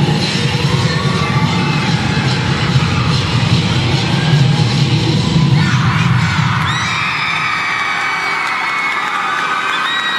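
Loud dance music with a heavy bass beat for a cheer-dance routine, stopping about halfway through as the routine ends on its final pose. The crowd then cheers, with many high-pitched screams and shouts.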